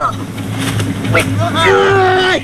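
Men crying out and straining in a struggle, with a long held strained cry from about one and a half seconds in. A steady low hum runs underneath.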